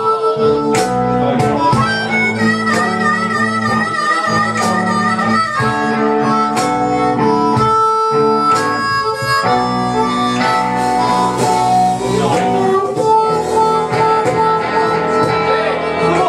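Live blues band in an instrumental break: an amplified blues harp (harmonica) solo over electric guitar, bass and cajon. The harp holds notes with a wavering vibrato a few seconds in.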